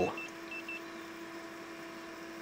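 Handheld infrared thermometer giving four short high beeps, in two quick pairs, as it takes a temperature reading. A steady low hum runs underneath.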